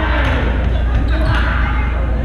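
Echoing sports-hall ambience: voices of players talking over a steady low hum, with a few short knocks and thuds of play on the hardwood floor.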